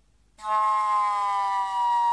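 Vermeulen flute, a straight-blown slide flute, sounding one long note that comes in about half a second in and slowly slides down in pitch.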